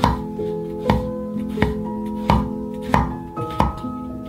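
Kitchen knife slicing button mushrooms on a wooden cutting board: six even strokes, each ending in a sharp knock of the blade on the board, over background music.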